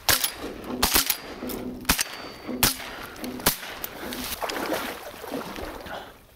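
A volley of shotgun shots from two or more hunters firing at ducks flying overhead, about six sharp blasts in the first three and a half seconds, some coming almost together.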